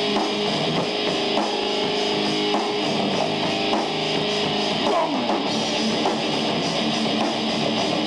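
Heavy metal band playing live: distorted electric guitars, bass and drum kit in a steady instrumental passage with no singing.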